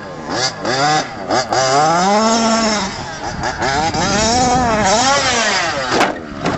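Small two-stroke gas engine of an HPI Baja 5T 1/5-scale RC truck revving up and down as it is driven, its pitch rising and falling over and over with the throttle.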